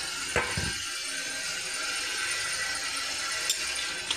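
Egg curry gravy simmering in an aluminium pot with a steady hiss. About half a second in, a metal utensil clinks once against the pot with a short ring, and there is a faint tick near the end.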